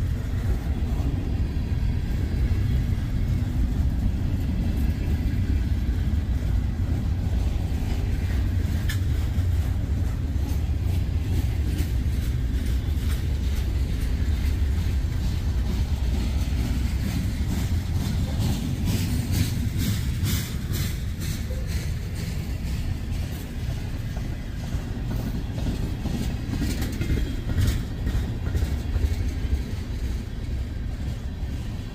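Freight train cars rolling past, a steady low rumble of steel wheels on rail with repeated clicks as the wheels cross rail joints. The clicks come thickest in the second half.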